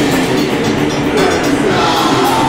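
A metal band playing live at full volume: a dense, unbroken wall of distorted electric guitars over fast drumming.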